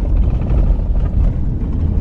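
Car cabin road noise: tyres rolling over a cobbled stone-block road surface, a loud, steady low rumble.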